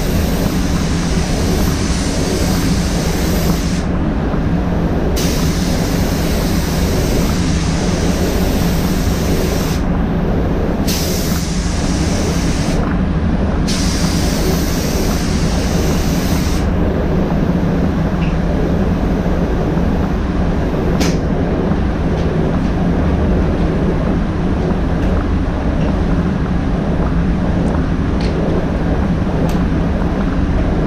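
Steady drone of a paint booth's air-handling fans, over which the hiss of a spray gun's compressed air starts and stops as the trigger is pulled and released in passes. The spray hiss drops out a little past halfway while the fan drone runs on.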